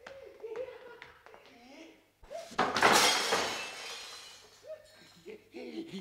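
A sudden loud crash on stage about two and a half seconds in, fading over about two seconds, as a running actor stumbles and falls. Voices are heard before and after it.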